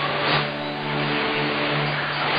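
Music from a shortwave AM broadcast on 11730 kHz, received on a Yaesu FT-817, under heavy static hiss. Long held notes shift pitch every second or so.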